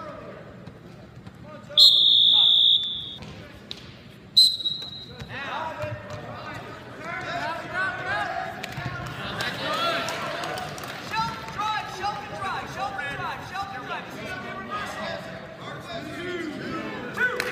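A referee's whistle blows one long blast of about a second, then a short second blast a couple of seconds later. The whistles stop and restart the wrestling. Overlapping shouts from the stands and corners follow.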